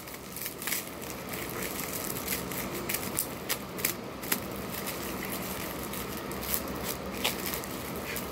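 Plastic bubble wrap crinkling and crackling as it is handled, with scattered small sharp clicks all through.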